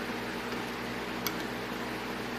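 Steady room hiss with a low hum, and one small metallic click a little past halfway as an Allen key works a set screw in a steel arbor adapter on a bench grinder's shaft.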